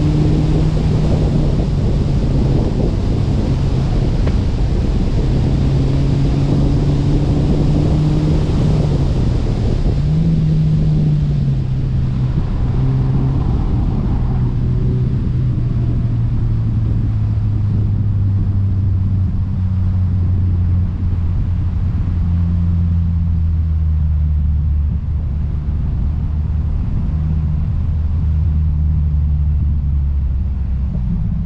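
Car engine running on track, heard from a camera mounted outside the car with wind and road noise over it. For the first ten seconds or so the engine note holds high with brief shifts; then it drops lower and slowly falls, and the rushing noise eases as the car slows.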